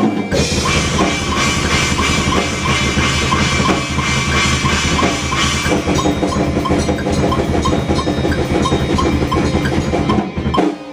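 Loud band music driven by a rock drum kit, with kick and snare keeping a fast, steady beat under a dense sustained mix.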